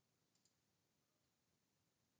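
Near silence: room tone, with a faint quick double click of a computer mouse about half a second in.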